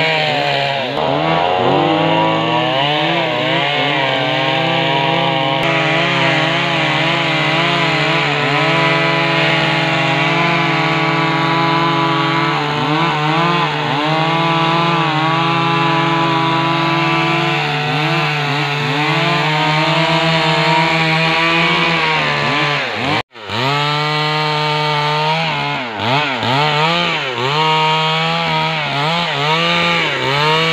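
Stihl two-stroke chainsaw running at high revs under load, rip-cutting a log lengthwise into planks. Its pitch dips and recovers again and again as the chain bogs in the cut, with a split-second break about two-thirds of the way through.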